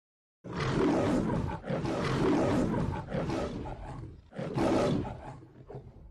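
A roar in about four long, loud bursts, starting about half a second in and fading away near the end.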